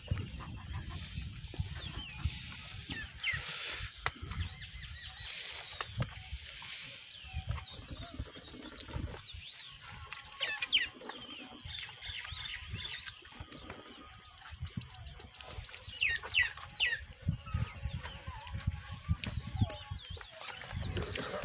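Birds chirping in short, sweeping calls, in clusters near the start, about halfway through and again near the end, over low, irregular rustling and knocking close by.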